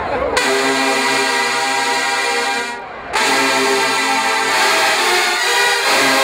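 HBCU marching band's brass section playing loud held chords: the first comes in suddenly about half a second in, breaks off briefly near the middle, and a second long chord follows.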